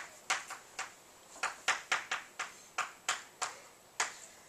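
Chalk tapping and scratching on a blackboard as words are written: an irregular run of about a dozen short, sharp strokes and taps.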